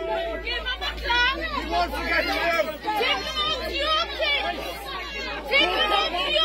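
Several people talking at once, their voices overlapping into an indistinct chatter.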